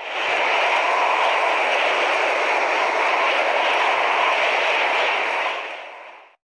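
A steady rushing wind noise that swells up at the start, holds level, and fades out near the end.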